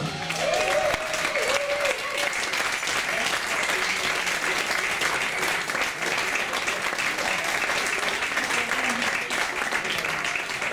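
Audience applauding steadily, with voices in the crowd, at the end of a live band number.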